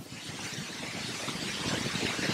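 A rushing noise with no clear pitch that grows steadily louder, like a vehicle approaching.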